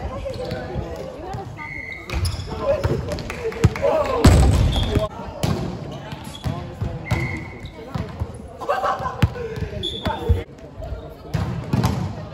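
Volleyball game sounds: a ball being struck and bouncing on the court, with players' voices and shouts and a few short high sneaker squeaks on the wooden floor, echoing in the sports hall. The loudest hit comes about four seconds in.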